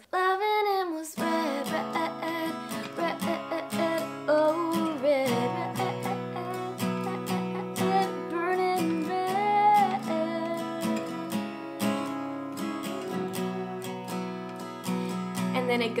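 A short laugh, then a capoed Fender Sonoran steel-string acoustic guitar strummed in steady chords, with a woman's voice singing along over it in places.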